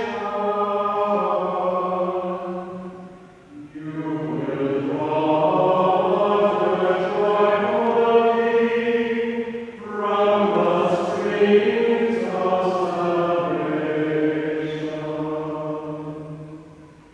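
Voices singing a slow church chant, most likely the sung responsorial psalm after the reading, in long held phrases that break briefly about three and a half and ten seconds in.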